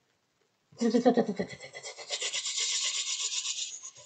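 A burst of rapid machine-gun fire, a fast rattle of about ten shots a second, starting about a second in and lasting about three seconds.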